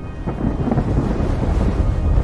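A low, thunder-like rumbling sound effect that swells steadily louder.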